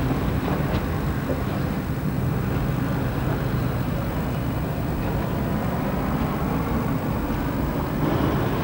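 Steady low rumble of background noise with a faint hum, even throughout.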